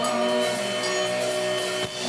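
Live rock band playing: amplified electric guitar chords held over drums and cymbals, with a brief gap in the sound near the end.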